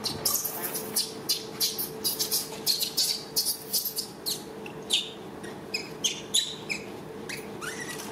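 Rapid, irregular high-pitched chirps and squeaks, several a second, from small animals, over a faint steady hum.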